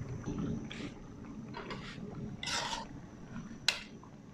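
Sinigang broth boiling in a wide aluminium pan: a steady low bubbling with a few short hisses about a second apart. A single sharp click near the end is the loudest sound.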